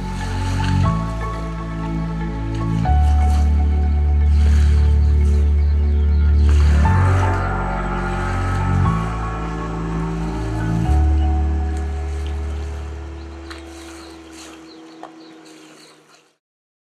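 Background music: slow sustained chords over a deep bass note that changes every two to four seconds, fading out over the last few seconds.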